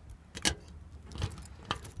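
A bunch of keys on a ring jangling as a key is worked into the lock of a metal community mailbox, with a few sharp metallic clicks, the loudest about half a second in.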